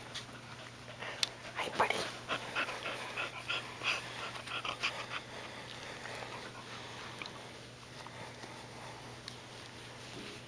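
Keeshond panting right at the microphone, short quick breaths about four a second for a few seconds, then fading, with rustling as his fur brushes the phone.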